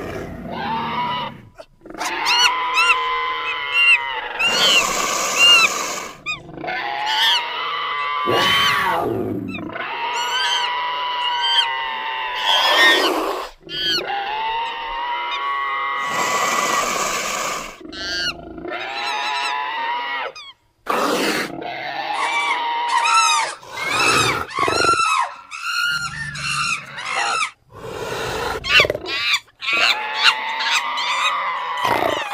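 Monkey-man creature sound effects: a rapid string of ape-like screeches, hoots and roars, call after call with short breaks, built from layered primate and big-cat recordings.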